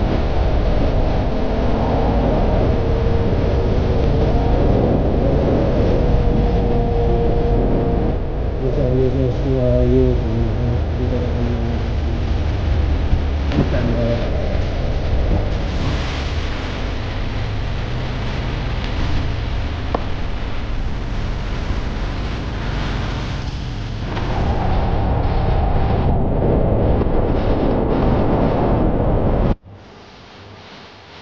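Motorcycle ride heard from a helmet-mounted mic: wind rushing over the mic on top of the bike's engine running. The engine note rises and falls briefly about a third of the way in. The sound cuts off suddenly just before the end.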